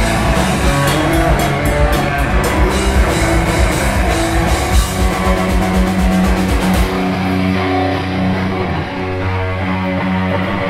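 Crust punk band playing live: fast drums under loud electric guitars. About seven seconds in, the drums stop and the guitars carry on alone with held notes.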